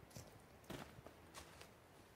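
Faint footsteps on a trail of dry fallen leaves, a few separate steps over a low background hiss.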